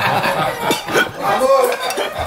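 Cutlery clinking against plates and dishes, with voices going on alongside.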